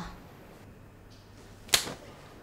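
A single sharp, loud smack of a hand striking skin, a slap, near the end.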